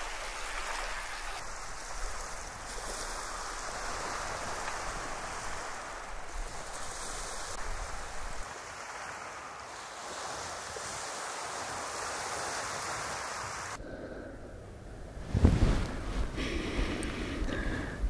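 Small waves of the sea washing over a pebble and shell beach: a steady hiss of surf. A few seconds before the end the sound changes to gusts of wind on the microphone, with a few low buffets.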